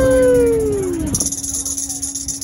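A long howl-like vocal note with a smooth falling pitch sounds over the end of a held acoustic guitar chord, and dies away about a second in. A steady low hum carries on underneath, and a high hiss comes in after the note ends.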